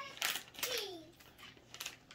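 A young child's brief vocalising with a falling pitch, over the sharp crinkle of a plastic snack bag of wasabi peas being opened.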